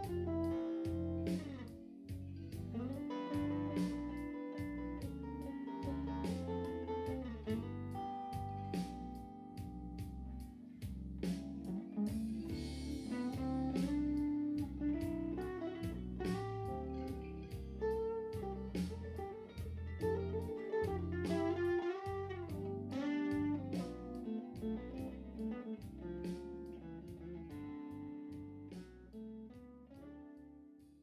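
Fender Stratocaster electric guitar played through a 1955 Windsor Model 707 tube amp (a Magnatone Model 107 Starlet), running blues-style notes and chords, fading out near the end.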